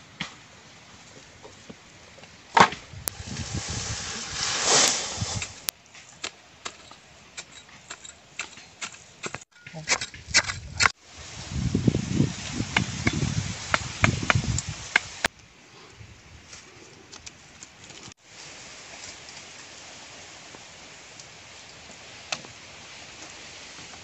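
Wooden sticks and bamboo poles being handled and knocked together, with scattered sharp knocks and rustling broken up by several sudden cuts. The last several seconds hold a quieter, steady outdoor background.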